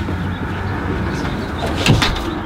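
A wooden front door swung shut, landing with a single sharp thud near the end, over a steady background rumble.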